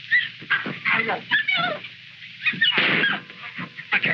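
Wordless cries and shrieks of people struggling, with sharp knocks between them, on a thin early sound-film track.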